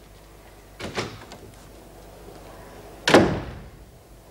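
A door: a lighter click or knock about a second in, then the door slammed shut about three seconds in, its loud bang dying away quickly.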